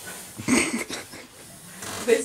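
A short, loud vocal sound from a person about half a second in, not words, followed by quieter rustling noise.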